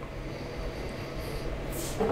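A man taking a sip of beer from a can, quiet, with a short breath near the end as he tastes it.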